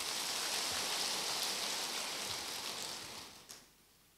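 Audience applause, an even patter of many hands clapping that fades out near the end.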